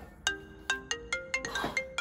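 A smartphone ringtone playing: a quick, repeating melody of short ringing notes, about four or five a second.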